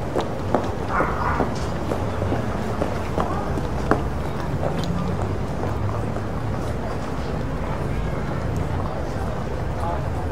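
Town street ambience: a steady low hum with indistinct voices of passers-by and a few light taps.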